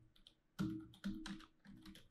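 Typing on a computer keyboard: three short runs of quick keystrokes.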